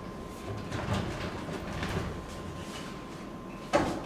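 Large recycled-pine mirror frame being handled and shifted, with irregular scuffs and rubbing of wood, then one sharp wooden knock near the end.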